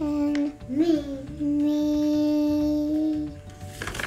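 Singing with music at the close of a song: a short sung phrase with a quick pitch glide, then one long held note lasting about two seconds. A short rustling noise comes just before the end.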